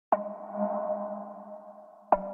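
Electronic music intro: a single bell-like synth ping, struck once and ringing out as it fades over about two seconds.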